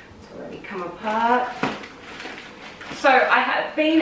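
A woman speaking, with one sharp click about one and a half seconds in.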